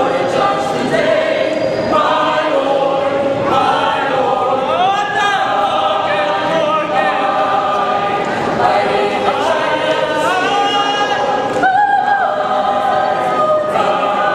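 Mixed choir of men's and women's voices singing a cappella in parts, with the voices sliding up in pitch together several times.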